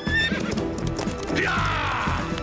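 A horse whinnies near the end, its call falling in pitch, over the beat of galloping hooves.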